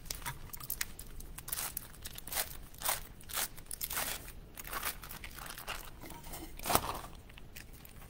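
Foil wrapper of a cream cheese block being peeled open and crinkled in a string of short crackly rustles, with one sharper thump about seven seconds in.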